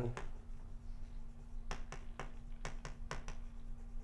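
Chalk striking and tapping on a blackboard as a word is written: a cluster of quick, sharp clicks in the second half, over a steady low hum in the room.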